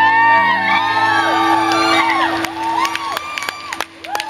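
A live rock band's electric guitars and bass hold a ringing final chord while the crowd screams and whoops over it. The band fades out about two-thirds of the way through, leaving crowd cheers and a few sharp claps.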